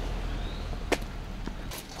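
A single sharp click or knock just under a second in, over a low outdoor rumble that fades away.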